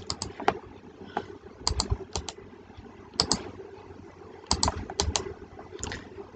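Clicks of a computer mouse and keyboard in small clusters of two or three sharp clicks, about one cluster every second or so, over a faint steady hum.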